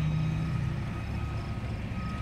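Heavy truck's diesel engine running at a distance: a steady low hum that fades about half a second in, leaving a low rumble.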